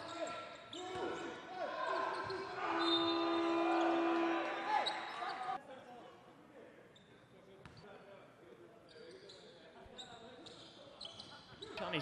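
Basketball arena sound: crowd noise and a ball bouncing on the hardwood court, with a long steady horn tone lasting about a second and a half around three seconds in. The sound then drops abruptly to a much quieter stretch with faint court sounds.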